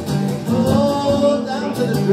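Live rock song: electric guitar playing with a male voice singing.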